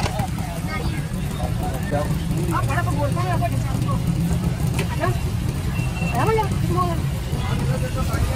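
Busy street-stall ambience: a steady low rumble under background voices, with a couple of sharp clicks, one about five seconds in.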